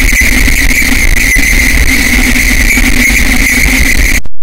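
Loud, digitally distorted edit audio: a steady drone with a held high tone over a heavy low rumble, unchanging throughout.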